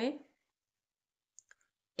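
A spoken word trails off, then near quiet with two faint, short clicks close together about a second and a half in.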